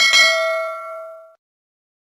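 A notification-bell 'ding' sound effect from a subscribe-button animation: one bright strike that rings out and fades away within about a second and a half.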